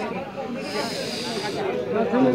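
A hiss lasting about a second, starting about half a second in, over background voices.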